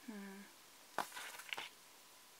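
A short hummed "mm" from a woman's voice, then about a second in a sharp click and a brief crackle of paper and sticker sheet being handled as stickers are pressed onto a planner page.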